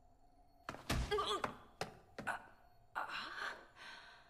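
A few short thuds and knocks with brief voice sounds between them, starting about a second in and fading out near the end.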